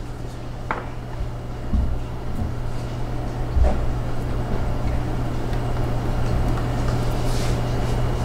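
A steady low hum under an even whirring noise, with a few soft knocks in the first half.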